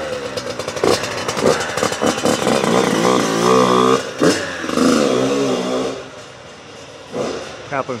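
Yamaha YZ85 two-stroke engine being revved: quick sharp blips at first, then two rising revs about three and four and a half seconds in. It drops away to a low running sound about six seconds in.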